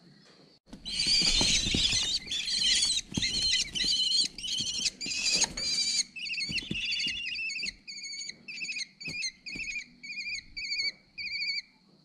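Kestrel chicks calling loud and close in the nest box. A dense run of harsh repeated calls with scuffling underneath lasts about five seconds, then breaks into separate short calls about two to three a second that stop just before the end.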